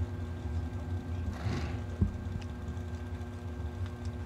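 Drag-racing dragster engines idling in the lanes, a low steady rumble. About a second and a half in there is a brief hiss, then a single thump.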